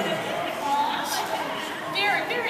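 Indistinct chatter of several voices in a large indoor hall.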